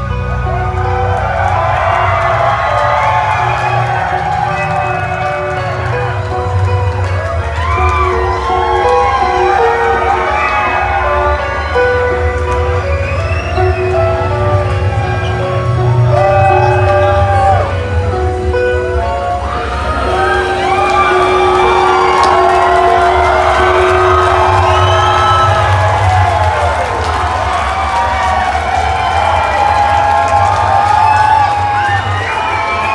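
Live metal show: an electric guitar holds long sustained notes over a steady low drone, while a crowd cheers and whoops throughout.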